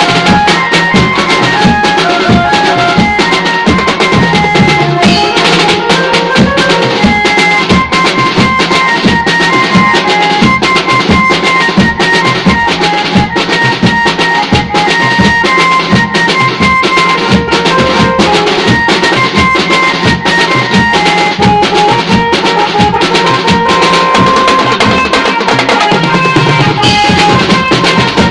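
Steel band playing: steel pans ring out a melody of clear, pitched notes over a steady percussion beat.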